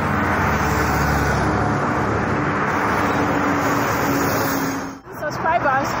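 Road traffic: a steady rush of tyre and engine noise with a vehicle's engine hum, cut off abruptly about five seconds in.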